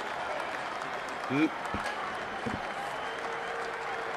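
Applause and crowd noise at a wrestling event, a steady crackly patter with no single loud event, and a brief rising vocal sound about a second and a half in.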